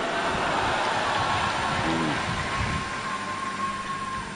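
Crowd noise from a large congregation in a hall: a steady wash of many voices. A faint held note comes in about a second in.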